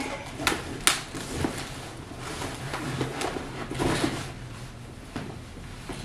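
Rustling and light knocks of a laptop and its charger being packed into a tote bag, with two sharp clicks within the first second.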